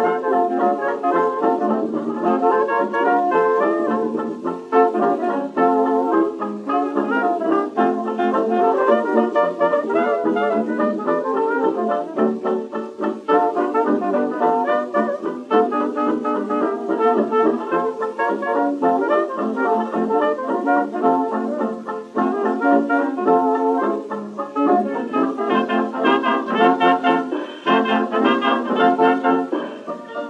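A 1925 dance band playing a foxtrot, brass to the fore, from a 78 rpm record; the sound has little bass or treble.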